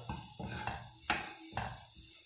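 Spatula stirring onions and green chillies frying in a non-stick pan: a few quick scraping strokes against the pan.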